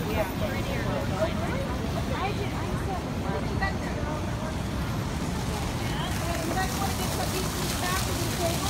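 Busy city street ambience: background chatter of passers-by over a steady rumble of traffic.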